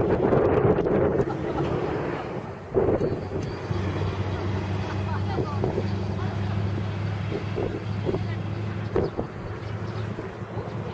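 Outdoor wind buffeting the microphone in the first second or so. Just under three seconds in there is a sudden thump. After that comes a steady low motor hum, with faint brief voices over it.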